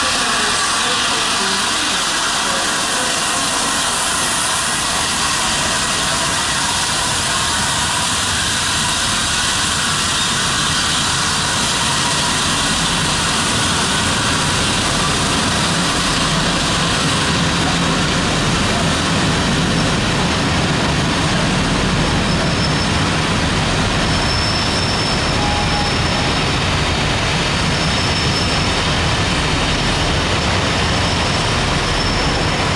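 LNER A3 Pacific steam locomotive 60103 Flying Scotsman and its train of coaches running through the platform: a steady rolling noise of wheels on rail. The rumble deepens from about halfway, as the coaches pass close by.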